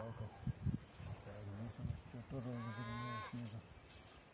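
A cow mooing once, a single low call lasting about a second, past the middle. A few dull low knocks come before it.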